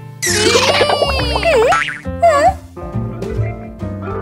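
Cartoon background music with comic sound effects: a cluster of swooping, up-and-down tones starts about a quarter-second in, and another wobbly glide follows just after two seconds.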